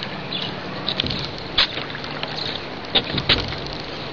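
A spinning rod and reel worked while a hooked rock bass is reeled in and landed, giving a few sharp clicks over a steady background hiss and low hum.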